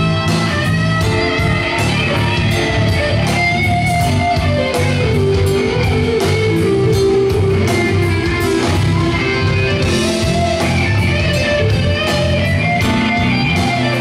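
Live band playing an instrumental break: an electric guitar carries the lead line over bass, keyboard and a steady drum beat, with no vocals. The lead slides down to a long held note about four seconds in.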